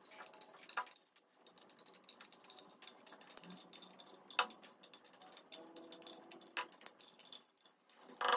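Metal spoon scraping and clinking faintly against a small glass jar as wet sand is scooped out and dropped into another glass jar, a steady run of small clicks with a sharper clink about four and a half seconds in.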